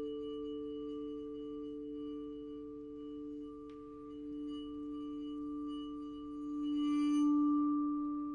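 Marimba bars bowed with a bow, sounding two pure, steady sustained tones together, the lower one swelling louder near the end. A faint click comes about midway.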